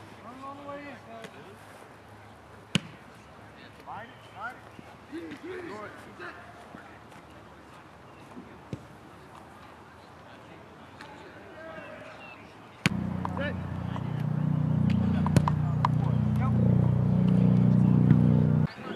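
Faint distant voices across an open practice field with a few sharp knocks of footballs being handled. About two-thirds of the way through, a loud low rumble of wind buffeting the microphone sets in abruptly and is the loudest sound.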